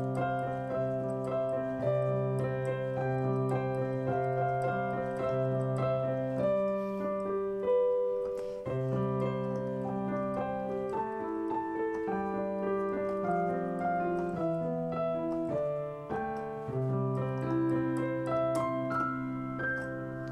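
Digital keyboard with a piano sound playing a slow, simple melody in the right hand over sustained left-hand chords in C major, the chord changing every couple of seconds.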